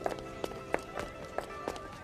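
Footsteps on stone paving, sharp short steps about three times a second, over soft background music with held notes.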